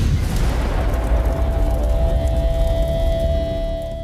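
Cinematic intro sting: a deep, loud rumbling boom that swells up and holds, with a steady sustained tone entering about a second in and a faint high shimmer joining halfway, easing slightly toward the end.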